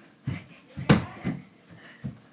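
Mini basketball bouncing on a room floor: a few separate thumps, the loudest about a second in.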